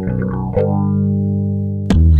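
Post-rock band recording: electric guitar through effects and bass guitar picking notes, then holding a ringing chord from about half a second in. A sharp drum hit near the end as the full band comes in.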